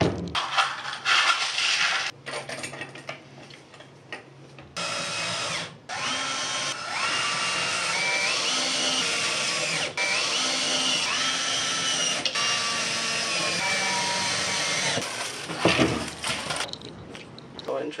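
Cordless drill/driver driving screws into a metal hinge on a wooden door panel: the motor whines up to speed and holds in a string of short runs. Before that there is irregular clatter of parts being handled.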